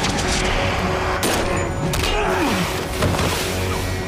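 Action-film soundtrack: a dramatic music score under fight sound effects, with sharp hits about a second in, near two seconds and at three seconds, the last the loudest.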